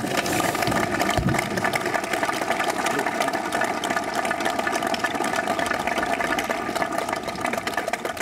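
Large audience clapping, a dense steady applause that starts right at the close of a speech and begins to fade near the end.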